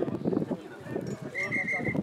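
Rugby players shouting and grunting while bound in a scrum, with scuffing knocks. About one and a half seconds in there are four short high pips in quick succession.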